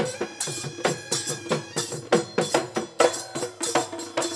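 Live Bihu folk music: a dhol drum beaten in a quick, driving rhythm with hand cymbals, over a few held tones.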